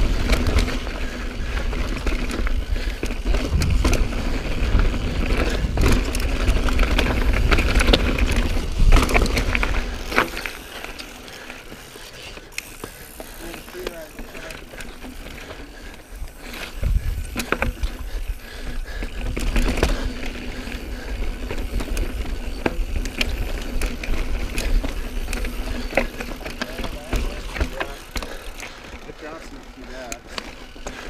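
Mountain bike riding over dirt singletrack and rock, with wind buffeting the microphone, tyre rumble, and the bike's chain and frame rattling and clicking. The rumble is heaviest for the first ten seconds or so, then drops off as the bike slows onto the slickrock.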